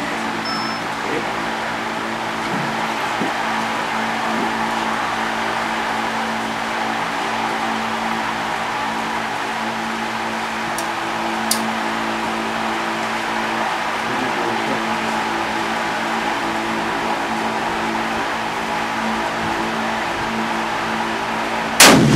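A steady hum runs underneath, then just before the end a single shot from a Barrett M95 .50 BMG bolt-action rifle goes off, much the loudest sound.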